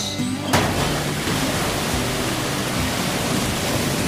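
Maple sap from a vacuum tubing system gushing out of the releaser and pouring into a stainless steel tank: a steady rush of falling liquid that starts about half a second in, with a brief hiss just before it.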